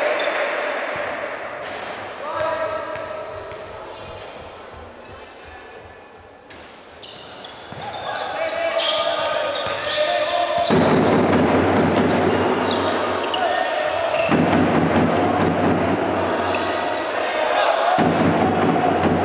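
Basketball arena during a game: the ball bouncing on the hardwood court among crowd voices in a large hall. The noise drops low in the middle, then turns much louder and denser about ten seconds in as play runs.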